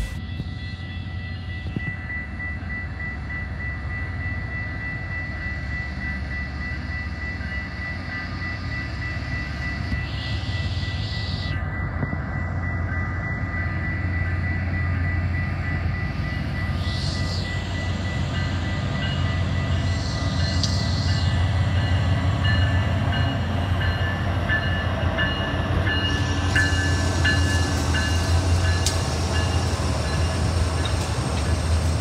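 Diesel freight locomotives of a Canadian National train approaching, their low engine rumble growing steadily louder, with a grade-crossing bell ringing steadily.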